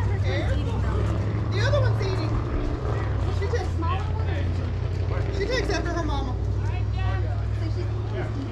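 Indistinct voices of several people talking and calling out across the field, over a steady low hum.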